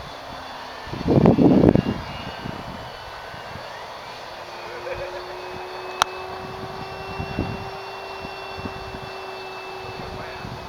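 E-flite Carbon-Z electric radio-controlled plane flying overhead, its motor and propeller holding a steady whine from a few seconds in. About a second in there is a brief loud low rumble.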